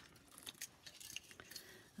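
Faint, scattered light clicks and ticks of fine craft wire and tiny faceted amethyst beads being handled as the beads are fed onto the wire.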